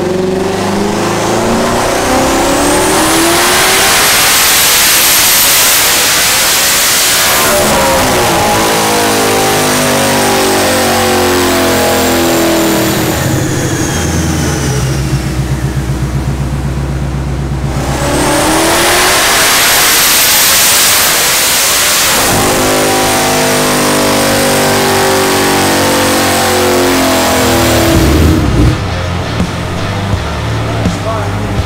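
Twin-turbo 2020 Shelby GT500's built 5.2-litre V8 making two full-throttle pulls on a chassis dyno. Each pull climbs steadily in pitch for about five seconds with a high rising whistle over it, then the engine coasts back down, settling to an idle in between. The second pull starts about eighteen seconds in.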